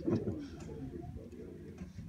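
A man's laugh tails off at the start, then faint outdoor background with distant children's voices and a few light clicks.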